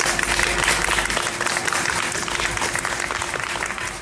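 Audience applauding, many hands clapping, beginning to taper off near the end.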